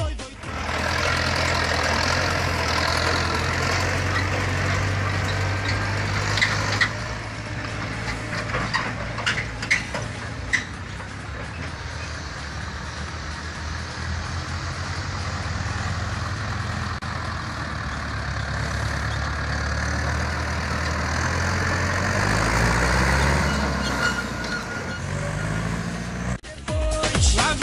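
Zetor tractor's diesel engine running and moving off, with a few sharp knocks about 6 to 10 seconds in. The engine note rises near the end as it accelerates.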